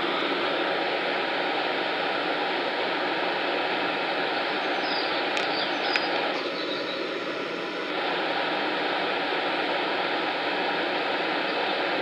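Class 450 Desiro electric multiple unit pulling away from the platform: a steady rush of running noise, with a brief set of whining tones about six seconds in.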